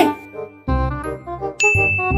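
A short run of tinkling, stepping notes, then a bright ding whose single high tone rings on.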